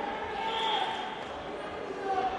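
Echoing sports-hall ambience: indistinct voices and background noise carrying through a large hall during a wrestling bout.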